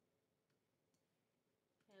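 Near silence, with two faint mouse clicks about half a second apart.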